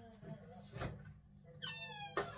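Faint background speech and a single knock, then near the end a brief high-pitched squeal that drops in pitch and levels off.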